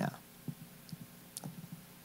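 Quiet room with a few faint, scattered clicks.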